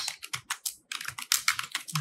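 Typing on a computer keyboard: a quick, uneven run of keystrokes with a brief pause a little under a second in.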